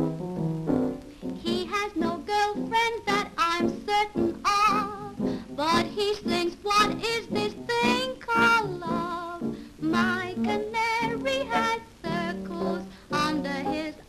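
A woman sings a comic popular song in a wavery, vibrato-laden voice, accompanied by a grand piano, in an early-1930s sound-film recording.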